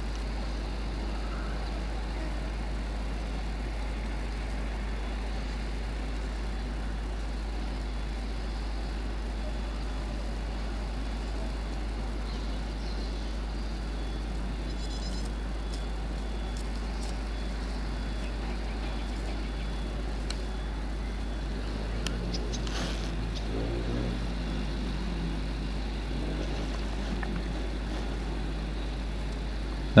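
Steady background noise with a constant low hum. A few faint clicks come in the middle, and a faint, irregular low sound comes in the last third.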